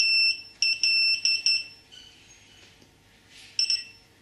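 AntiLaser Priority laser jammer beeping as it is powered on by a long press of the control-set button. One high pitch: a long beep at the start, then a quick run of four short beeps, then one more short beep near the end.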